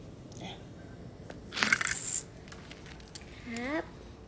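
A half-second burst of rustling and handling noise about halfway through, as a phone is moved about against clothing and fabric. Near the end, a short rising vocal sound.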